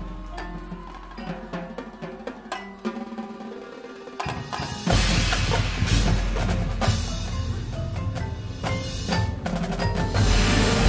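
High school marching band playing its field show. A quieter, percussion-led passage gives way about five seconds in to the full band coming in much louder.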